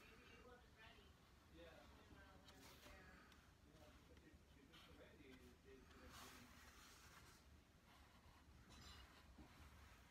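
Near silence: faint room tone with a few soft strokes of a marker tracing on craft foam, and a faint, indistinct voice in the background.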